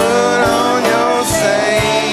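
Live rock band playing an instrumental passage: a drum kit keeps a steady beat of about two hits a second under sustained instrument notes.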